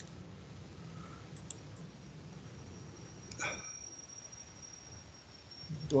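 Quiet pause on a video-call line: a faint steady hum from open microphones, a few soft clicks, and one brief voice-like sound from a participant about three and a half seconds in. A thin, faint high whine runs through the second half.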